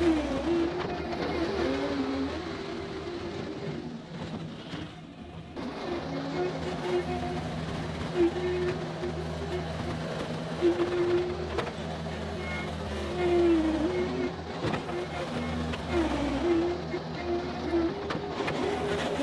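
John Deere 325G compact track loader's diesel engine running as it pushes and spreads topsoil, its pitch rising and falling with the load. It is briefly quieter about four seconds in.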